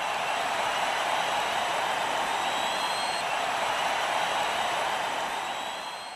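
Steady rushing noise effect under an animated logo, with faint high whistling tones that rise slightly. It holds level, then fades out near the end.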